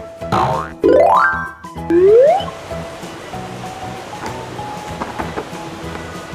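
Three rising cartoon-style 'boing' sound effects, one after another in the first two and a half seconds, over steady background music that carries on afterwards.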